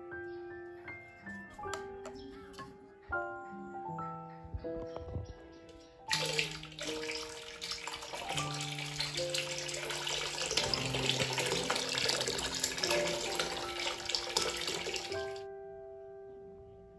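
Tap water pouring in a steady stream into a partly filled plastic bucket, starting abruptly about six seconds in and cutting off shortly before the end. Piano background music plays throughout.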